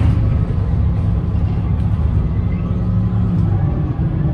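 Interior sound of a 2010 Gillig Low Floor Hybrid 40-foot transit bus under way: a steady low rumble from its Cummins ISB6.7 diesel and hybrid drivetrain mixed with road noise.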